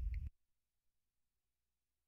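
Dead silence: a brief tail of sound cuts off just after the start, and the rest is a complete digital gap.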